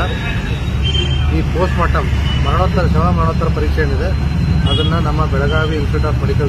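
A man speaking, giving a statement into a microphone, over a steady low rumble of background noise.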